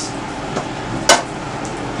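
A single sharp click or knock about a second in, over a steady hiss of room noise.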